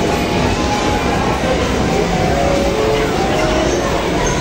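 Busy amusement arcade din: a loud, steady wash of overlapping electronic game-machine sounds with short beeping tones, over people's chatter.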